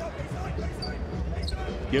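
Basketball being dribbled on a hardwood court over a steady arena crowd murmur.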